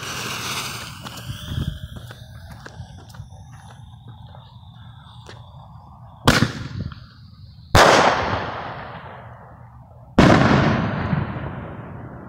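Burning fuse of a consumer mini shell mortar (reloadable aerial shell) sizzling and crackling for about six seconds, then the sharp bang of the shell launching from the tube. About a second and a half later the shell bursts with a loud bang and a long rolling tail, and another loud bang with a long tail follows about two and a half seconds after that.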